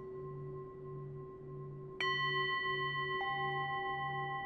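Singing bowls ringing over a low, pulsing hum. About halfway through, a bowl is struck and rings out bright and clear, and about a second later a second strike adds a lower tone; both keep ringing.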